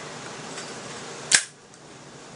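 A single short, sharp click about a second in, from the lighting of a tobacco pipe, over a faint steady hiss.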